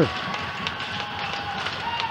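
Ice rink arena background just after a goal: a steady hiss of rink noise with a faint held tone and a few light taps.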